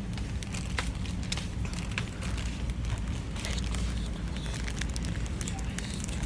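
Crackling handling noise on a handheld phone's microphone: many small irregular clicks over a steady low rumble.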